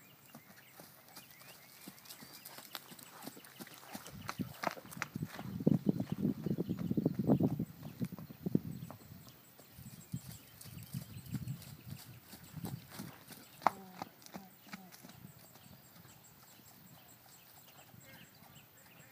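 Horse's hooves pounding on dry dirt as the horse moves quickly around the pen on a lead rope: a dense run of thuds that is loudest a few seconds in, then lighter and more scattered before it dies away near the end.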